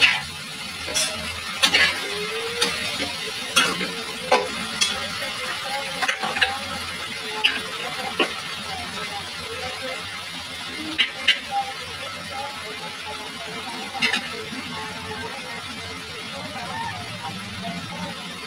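A metal spatula scrapes and clinks against an aluminium wok while chopped onions are stir-fried in oil, over a steady sizzle. The clinks come about once a second and die away about fourteen seconds in, leaving the sizzle alone.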